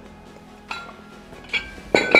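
Metal weight plates on adjustable dumbbells clinking as the dumbbells are set down on the floor: three sharp clinks, about 0.7 s, 1.5 s and 2 s in, each ringing briefly.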